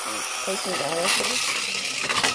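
Plastic Rabbids spinning-top toy being wound in its twist launcher and set spinning, a continuous rasping whir.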